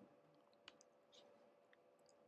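Near silence: faint room tone with a steady hum and a few soft clicks from operating a computer, the sharpest about two-thirds of a second in.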